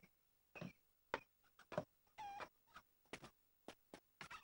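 Faint, irregular knocks of boots on the rungs of a wooden tower ladder, with one short creak about two seconds in.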